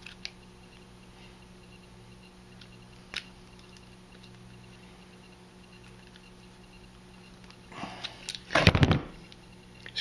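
Quiet room tone with a steady low hum and a couple of faint clicks, then a short bout of loud knocks and rustling from handling near the end.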